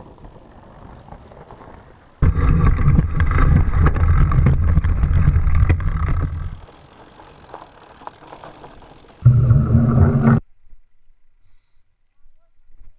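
Fat bike rolling fast over a dirt trail, its wide tires humming loudly on the ground from about two seconds in until past six seconds and again briefly near ten seconds, with quieter trail noise between. The sound cuts off suddenly near the end.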